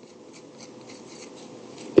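Faint scratching of a pen writing on paper, a series of short strokes.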